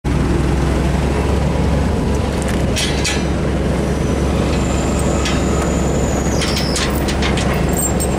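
Forklift engine idling steadily with a low hum, with light metal clinks near the end as a safety chain is handled.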